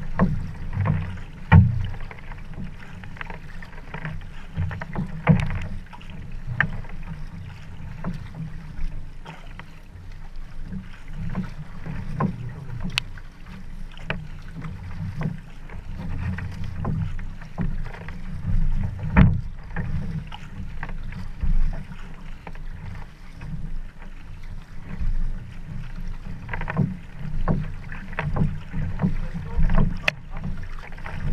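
Paddling on open water heard at the waterline of a sprint canoe: irregular splashes and slaps of water close by, over a steady low rumble.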